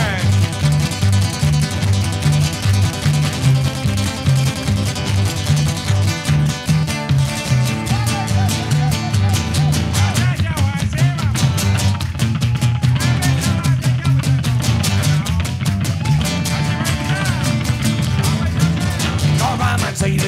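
Instrumental break of a live acoustic band: upright double bass playing a bouncing bass line under a steady strummed rhythm. A lead melody line comes in over it about halfway through.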